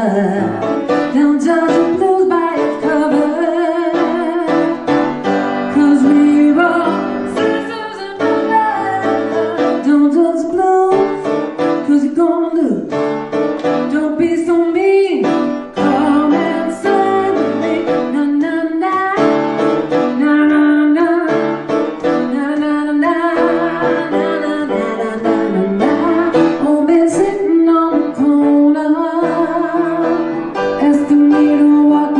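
A woman singing a blues song and accompanying herself on a grand piano.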